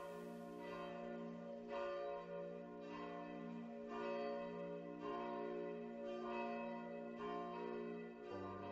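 Church bells ringing, a new stroke roughly once a second while the tones of earlier strokes ring on.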